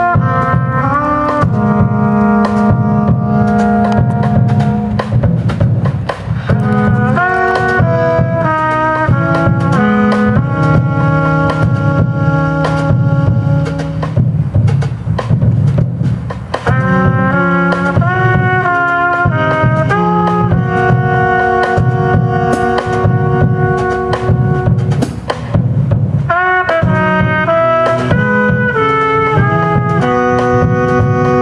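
Live jazz band playing: trumpet and tenor saxophone holding a melody in long notes together over electric bass and drum kit.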